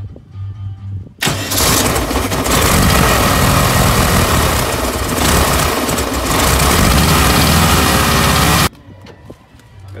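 Volkswagen T2 bus's air-cooled flat-four engine cranked and started: a second or so of cranking, then the engine catches and runs loudly and steadily for about seven seconds before the sound cuts off suddenly.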